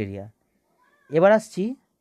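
A cat meows once, loudly: a rising-and-falling call about half a second long with a short second note after it.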